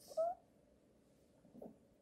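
A crying woman's short, high whimpering sob with a sniff just after the start, and a fainter sob about a second and a half in.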